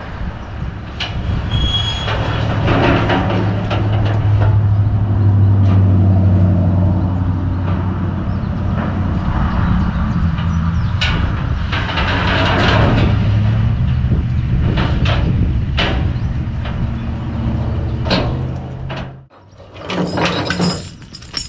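A truck engine idling steadily, with scattered metal clanks and knocks from work on a steel car-hauler trailer; the engine hum cuts off suddenly near the end.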